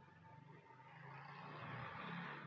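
Faint sizzling of chicken pieces frying in oil on a low flame in an aluminium kadhai while they are stirred, growing louder toward the end.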